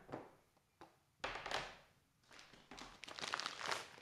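Hard plastic CGC comic slabs being handled and moved: a short scraping rustle about a second in, then a longer rustle with light clicks and taps in the second half.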